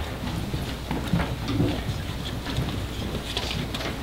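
Footsteps of a person walking up to a microphone table on a hard floor, with scattered light knocks and paper handling.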